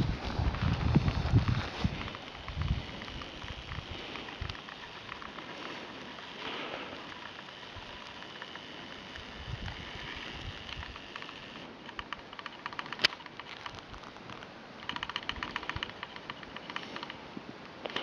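Wind buffeting the camera microphone: irregular low rumbles for the first few seconds, then a faint steady hiss. One sharp click comes about 13 seconds in, and a rapid fine crackle runs for a couple of seconds near the end.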